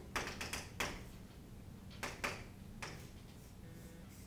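Chalk tapping and scratching on a chalkboard while writing: a quick cluster of taps in the first second, then a few more around two to three seconds in.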